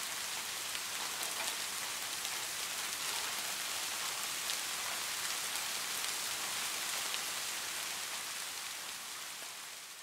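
Steady rain falling, an even hiss with no other sound, fading out near the end.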